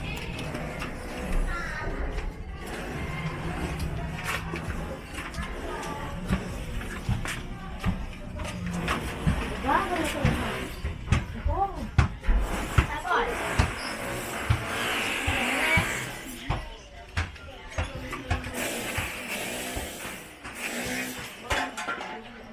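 Indistinct voices with music in the background, and scattered short clicks and knocks.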